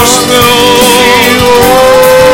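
Live church worship music: singers holding long notes over a band with keyboard and drums.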